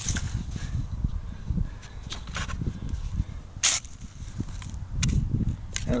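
Digging and scraping in dry, grassy soil with a plastic hand digger while searching for a coin in the hole: scuffing with a few sharp clicks, the loudest about two-thirds of the way in, over a low rumble.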